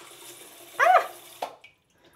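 Samodra non-electric bidet attachment spraying a jet of water into the toilet bowl on its low-pressure setting, a steady hiss that stops abruptly about one and a half seconds in as the spray is shut off.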